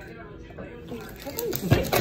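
Quiet room for about the first second, then speech near the end.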